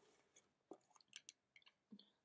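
Near silence with a few faint, short clicks and ticks from a cosmetic tub being handled and opened.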